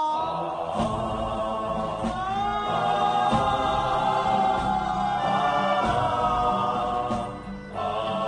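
Film background score: a choir singing long held notes over low drums, dipping briefly just before the end.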